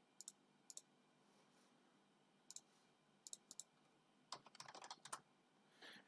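Faint computer keyboard keystrokes and clicks: a few scattered single clicks, then a quicker run of typing about four seconds in.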